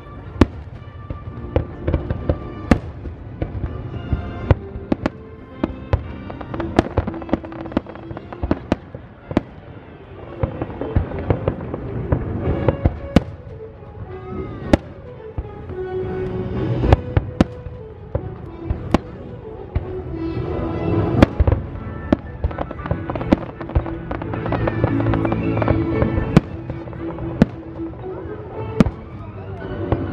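Aerial fireworks shells bursting in quick succession, sharp bangs and cracks at irregular intervals, over continuous music.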